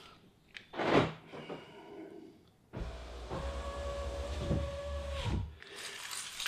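A click and a short rush of noise about a second in. Then the car's electric window motor runs for nearly three seconds, a steady whine with a low hum, raising the door glass all the way up. It cuts off when the glass closes.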